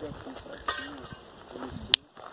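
People's voices talking in the background, with a sharp click just before the end.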